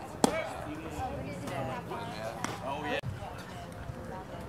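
A pitched baseball smacking into the catcher's leather mitt about a quarter second in: one sharp pop, the loudest sound here, with people's voices talking around it.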